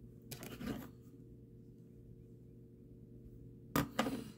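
Quiet room tone with a steady low hum, broken by a brief soft noise about half a second in and a short sharp sound just before the end.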